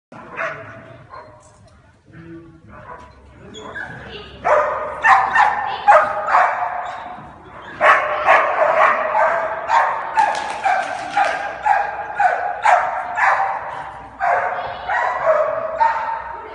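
Dog barking over and over as it runs an agility course. The barks are sparse and faint at first, then come loud and fast, about two a second, from a few seconds in.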